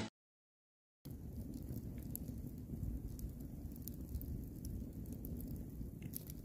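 Wood campfire burning, heard faintly, with scattered small crackles and pops over a low rumble, starting about a second in.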